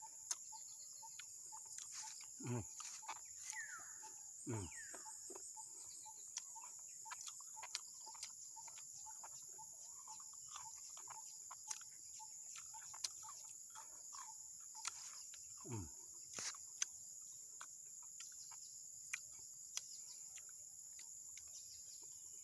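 Steady high-pitched drone of insects, likely crickets, in the grass, with a few short falling "mm" hums from a man eating durian and scattered faint clicks.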